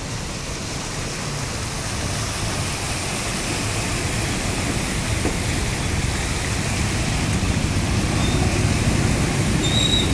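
Motorcycles and a car driving through floodwater: low engine rumble mixed with the steady wash of water pushed aside by their wheels. It grows louder toward the end as the bikes pass close.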